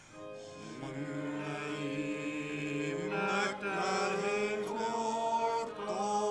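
Slow hymn sung by a congregation with keyboard accompaniment, moving in long held chords.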